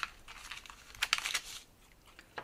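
Crinkling of a pink anti-static plastic bag being handled and opened as a small circuit-board module is pulled out: a sharp crackle at the start, then a short flurry of crackles about a second in.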